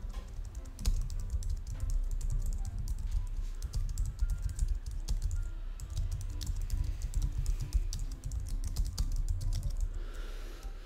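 Typing on a computer keyboard: a continuous, irregular run of quick key clicks over a low steady hum.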